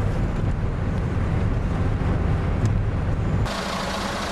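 Steady low rumble of engine and road noise inside a moving car's cabin. About three and a half seconds in, it cuts abruptly to a thinner, hissier outdoor street noise.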